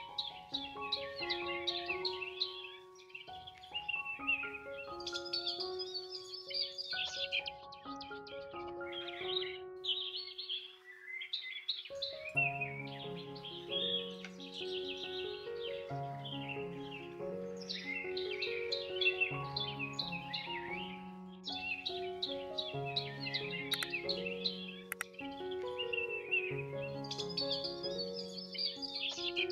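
Calm background music of slow, held melodic notes, with a lower bass line joining about twelve seconds in, over a near-continuous layer of bird chirps and calls.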